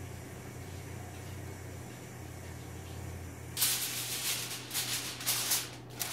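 A low steady hum, then from about three and a half seconds in, aluminium foil crinkling in a run of rustles as a sheet of it is spread over a baking dish.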